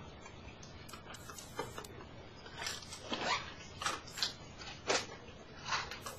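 Faint handling noise: irregular short clicks and rustles, sparse at first and more frequent in the second half.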